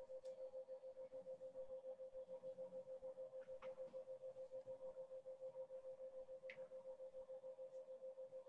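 A faint, steady hum at one pitch with a quick, even wobble in loudness, and a few soft ticks over it.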